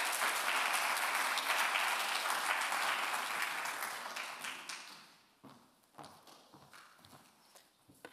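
Audience applauding, dying away about five seconds in, followed by a few faint knocks.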